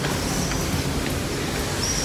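Steady city street background: an even low rumble of traffic with no distinct events.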